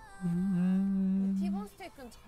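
A person humming a single steady 'mmm' for about a second and a half, the pitch lifting slightly as it starts.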